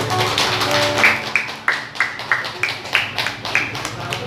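Live music with held instrumental notes, then a run of sharp rhythmic tapping strokes, about three and a half a second, from about a second in to near the end.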